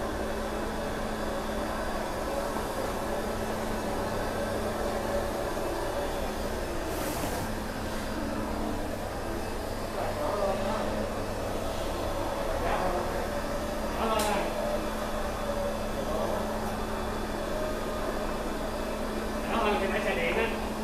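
HiClean HC50B walk-behind scrubber-dryer running, its brush and vacuum suction motors giving a steady hum with a constant low tone as it scrubs and squeegees the floor dry.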